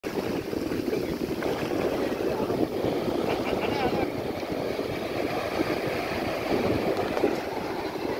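Small surf waves breaking and washing up a sand beach, with wind buffeting the microphone, a steady rough rushing throughout.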